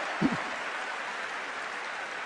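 Convention crowd applauding: a steady, even rush of noise from a large audience in an arena. A brief short vocal sound is heard about a quarter second in.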